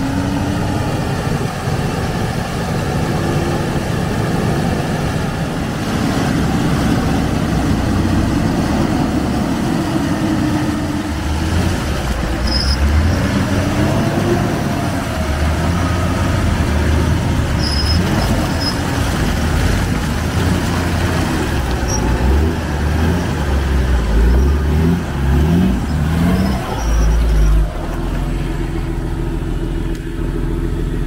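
Nissan Patrol 4x4 engine revving under load as the truck churns through deep swamp mud, the revs rising and falling again and again. Near the end come several quick throttle blips, then the engine drops to a steady idle.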